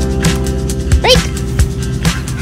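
Upbeat background music with a steady beat, and about a second in a single short, high yip from a young French Bulldog.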